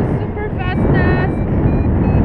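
Wind rushing over the microphone in paraglider flight, with a variometer's short electronic beeps, three of them, changing in pitch.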